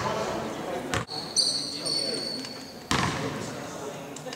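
A basketball bouncing on a gym's hardwood floor, three separate bounces with echo in the large hall, and a brief high squeak in between.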